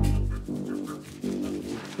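Dramatic background music from the score, with held low notes; it opens with a deep boom that fades in the first half second.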